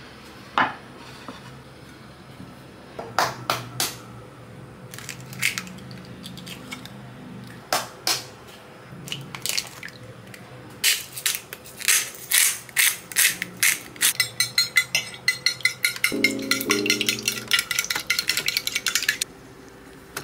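Eggs cracked against the rim of a dish, then whisked with a fork. Scattered sharp knocks come first, and for the last several seconds there is a quick, steady clicking of the fork against the dish, about four or five strokes a second.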